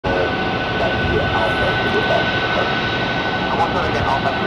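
Boeing 737 MAX 8's CFM LEAP-1B turbofan engines running at taxi power: a steady jet rush with one constant high whine, with voices faintly over it.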